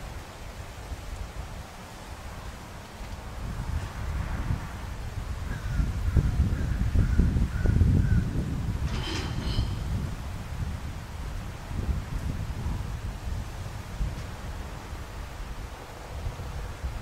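Wind buffeting the microphone outdoors, strongest about six to nine seconds in. Over it a bird chirps a short run of quick notes, then gives a sharper two-part call about nine seconds in.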